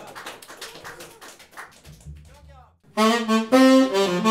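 Tenor saxophone comes in loud about three seconds in, playing a jazz phrase of held notes that step in pitch. Before it the band is quiet, with light drum strokes and a low bass note.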